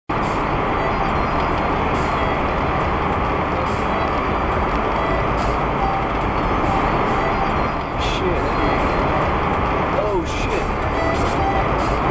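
Steady road and engine noise inside a car cruising at freeway speed, heard through a dashboard camera's microphone.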